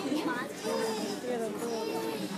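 Several children's voices chattering and talking over one another, no clear words.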